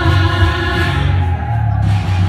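A woman and a man singing a musical-theatre duet live on stage, holding long sustained notes together.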